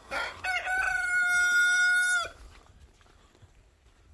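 A rooster crowing once: a single long crow of about two seconds that rises at the start, holds steady, and drops off at the end.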